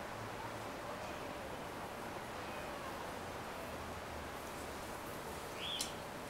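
Faint, steady outdoor background noise with no distinct source, and one short high-pitched sound near the end.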